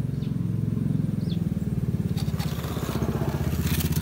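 A small engine runs steadily at idle, a rapid, even putter, with a few light crackles in the later part.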